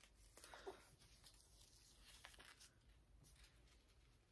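Near silence, with a few faint, short rustles as an elastic edge band is pulled off over wig hair.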